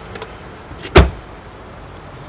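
Third-row seat of a Mahindra Scorpio-N being swung upright: a few light clicks, then one loud clunk about a second in as the seat comes into place.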